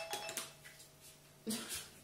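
A few light clicks of plastic cups being handled on a counter, then a brief bit of voice about one and a half seconds in.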